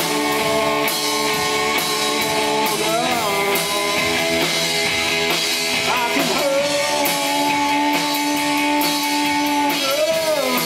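Live rock band: a male singer holding long notes over electric guitar, bass guitar and drum kit, with short slides in pitch between the held notes.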